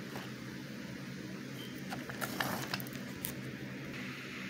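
Handling noise from toy trains being moved by hand on a carpet: faint scuffing and a few light clicks near the middle, over a steady low hum.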